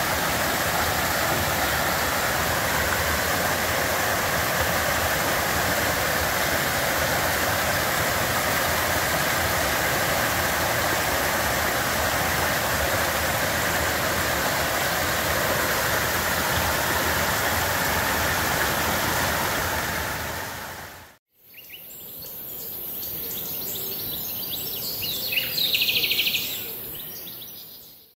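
A mountain stream rushing over mossy boulders, a steady even rush of water. It fades out about 21 seconds in, and a quieter, different sound follows, swelling and fading near the end.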